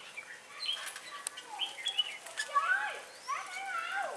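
Red-whiskered bulbuls singing: a run of short, warbling whistled phrases that rise and fall in pitch, with a few sharp clicks in between.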